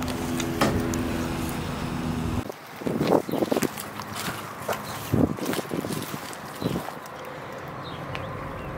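Steady hum of several even tones from a hovering quadcopter drone's propellers, which cuts off abruptly a little over two seconds in. After that come scattered faint knocks and rustles.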